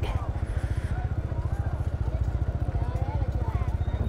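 Motorbike engine running at low speed close to the microphone, a steady low rumble with a fast, even pulse. Faint chatter of a crowd of people sits behind it.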